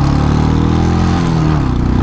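Royal Enfield Classic 500's single-cylinder engine pulling on the move, its note climbing and then dropping away a little past a second in, with wind rushing over the microphone.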